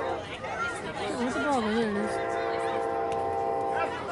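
A horn sounds one long, steady, unwavering note for about two seconds, starting about halfway in and cutting off suddenly near the end, over spectators talking.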